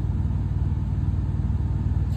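Steady low mechanical hum, unchanging throughout.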